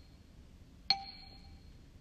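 A single bright bell-like chime note about a second in, struck once and ringing briefly before fading.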